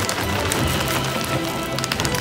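Black oil sunflower seeds pouring from a plastic bag into a bowl: a dense patter of small clicks that starts right at the beginning, over background music.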